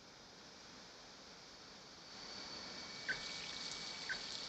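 High-pressure water jets spraying: a steady hiss of water that swells about two seconds in, with a brief high squeak about three seconds in.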